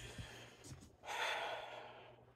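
A woman's audible breath: one in-breath lasting under a second, about halfway through, between sentences.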